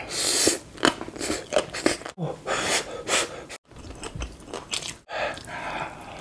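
Close-miked mouth sounds of eating shredded green papaya salad: a slurp of papaya strands at the start, then crisp crunching and wet chewing. The sound stops dead and restarts three times, as short clips are spliced together.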